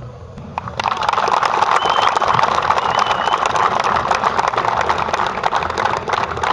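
A small crowd applauding: dense hand-clapping starts about a second in and carries on steadily.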